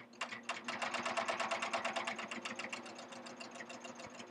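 Serger set up for coverstitch, running with a belt loop binder attachment: a fast, even run of needle-stroke clicks that picks up about half a second in, then slows and grows quieter over the last couple of seconds.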